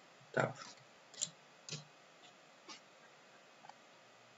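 A few faint computer keyboard keystrokes, single separate clicks about half a second apart, typing a short word.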